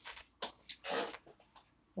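A few short, soft breathy puffs and small mouth clicks from a woman's voice close to the microphone, with no words, the largest just before a second in.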